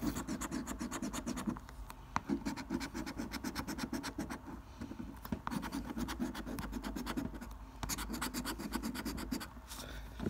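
A coin scratching the coating off a paper scratchcard in rapid, repeated strokes, several a second.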